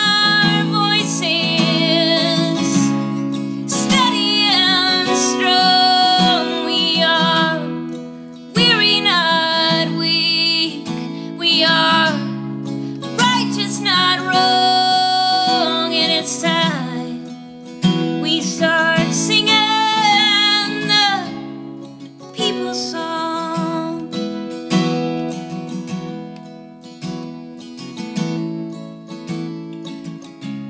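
A woman singing with vibrato to her own strummed acoustic guitar. The voice stops about two-thirds of the way through, and the guitar plays on alone to close out the song.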